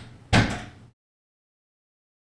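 A door slammed shut: one loud bang about a third of a second in.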